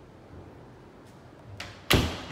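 A closet door being pushed shut: a light knock, then a loud sharp bang near the end as it closes, with a short ring after.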